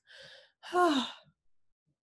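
A woman's sigh, acted out as a weary sigh: a soft breath in, then a voiced breath out that falls in pitch, over in about a second.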